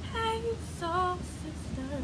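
A girl singing two short held notes without words, the first steady and the second lower and wavering, over a steady low hum.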